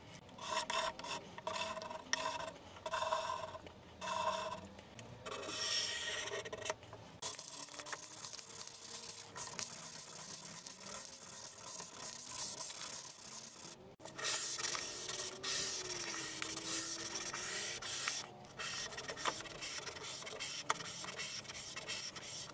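Hand sanding of padauk and merbau hardwood with 320-grit sandpaper. The first few seconds are a run of about six short, separate scraping strokes; after that the rubbing goes on almost without a break.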